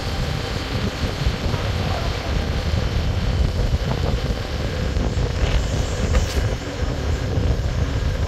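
Wind buffeting the microphone with tyre and road noise while riding along an asphalt road at speed: a steady, rumbling rush.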